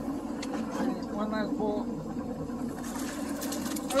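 Boat's outboard motor running with a steady low drone, under brief faint talk about a second in.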